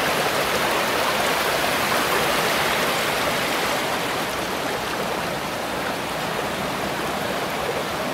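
Spring meltwater rushing steadily through a pond's overflow spillway, easing a little in the second half.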